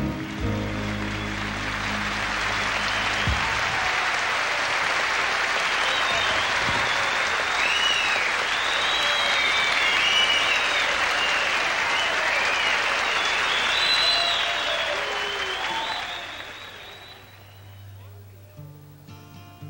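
Large concert audience applauding, with high whistles and cheers, as the band's last held chord stops about three seconds in. The applause dies down near the end.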